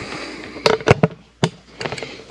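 Camera handling noise: rubbing and a few sharp, irregular knocks as the recording camera is picked up and carried.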